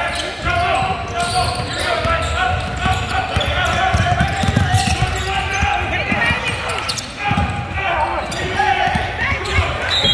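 Basketball being dribbled on a hardwood gym floor during a game, with low thuds, among the voices of players and spectators in the gymnasium.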